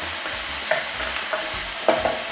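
Diced chicken breast sizzling steadily as it fries and browns in oil in a pot, with a wooden spatula scraping and knocking against the pot a few times, the sharpest knock near the end.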